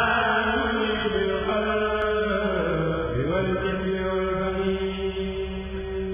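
A kurèl, a group of male voices, chanting a Sufi qasida in unison. It sings long held notes that slide up in pitch at the start and again about three seconds in.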